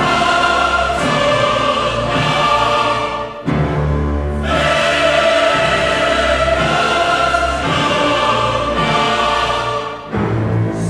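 Choral music with sustained held chords sung by many voices. It dips briefly a little over three seconds in, then comes back in strongly.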